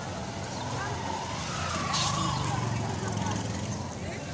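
Street-market bustle with people talking, and a motor vehicle's engine growing louder and then easing off around the middle, with a short hiss about halfway through.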